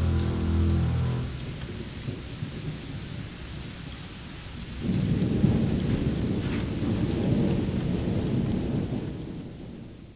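A held chord of music dies away about a second in. A steady hiss like rain follows, with a low rolling rumble like thunder that swells about halfway through and fades out near the end.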